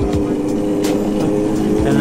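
Go-kart motor running with a steady whine as it drives along, over background music with a steady beat.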